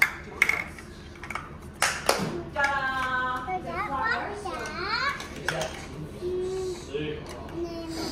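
Large plastic toy building blocks clacking against each other and the wooden floor, a few sharp clicks in the first two seconds. Then a toddler laughs and babbles.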